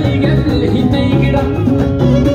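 Live Amazigh wedding band music, loud and steady, with a drum kit and bass keeping a regular rhythm under string and keyboard parts.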